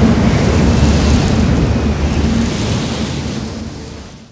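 Steady, wind-like rumbling noise, the promo's sound design under the title card, fading out over the last second and a half.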